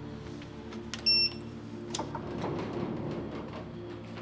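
Building video-intercom panel giving a short, bright electronic beep about a second in as its call button is pressed, over steady low sustained background music. A rustle of movement follows.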